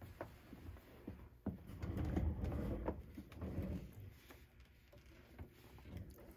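Handling noise: a low rumble with a few soft knocks, one sharper knock about one and a half seconds in, as fabric and things are moved about and the patch is set under the sewing machine's presser foot.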